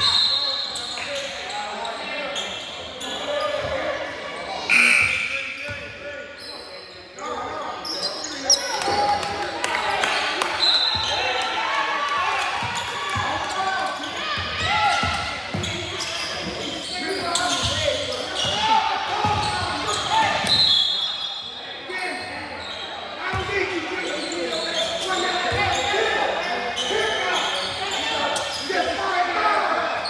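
Indoor basketball game: a basketball bouncing on a hardwood court and sneakers squeaking, with indistinct shouts from players and spectators, all echoing in a large gym.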